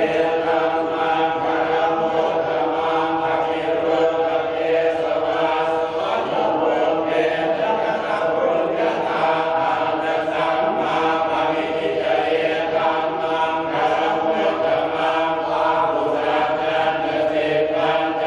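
Group of Buddhist monks chanting together in unison, a steady, continuous drone of many voices.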